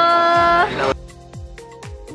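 A voice holding one long drawn-out note that cuts off abruptly just under a second in, followed by quieter background music with a steady beat about twice a second.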